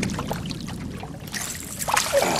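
Water splashing and sloshing beside a small fishing boat as a hooked lake trout thrashes at the surface and is scooped into a landing net, the splashing getting brighter in the second half.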